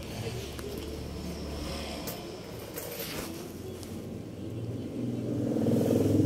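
Steady background noise with a low rumble, and a voice starting up near the end.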